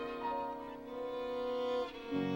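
Solo violin playing slow, held notes in a classical piece, moving to a higher note about a quarter second in and to a new note near the end.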